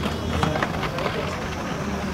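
Indistinct voices of people standing around the court over a steady low hum, with a single light knock about half a second in.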